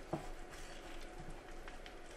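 Chef's knife cutting around an avocado on a wooden cutting board: a sharp knock just after the start, then a few faint taps and scrapes as the fruit is turned against the blade.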